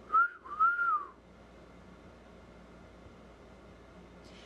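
A person whistling: a short high note, then a longer note that rises and falls, about a second in all.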